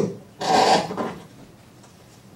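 A single short rasping rub about half a second in, lasting well under a second and then fading.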